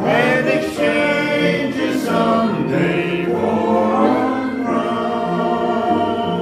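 Hymn singing: a man's voice singing held notes with vibrato, with other voices joining in.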